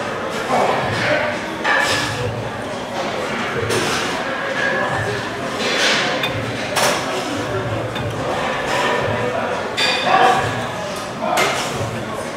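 Indistinct voices in a large, echoing gym hall, with a short sharp sound about every three seconds.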